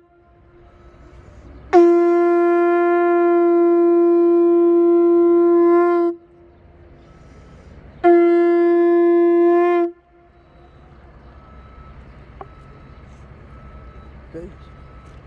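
Conch shell trumpet blown in two steady blasts, each on one held note, starting abruptly. A long blast of about four seconds is followed, after a short pause, by a shorter one of about two seconds.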